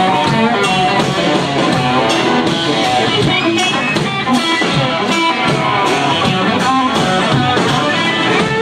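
Live country band playing an instrumental passage without vocals: electric guitar and fiddle over a steady drum-kit beat.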